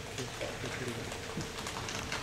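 Scattered, uneven hand clapping from a small rink audience, with people's voices talking low underneath.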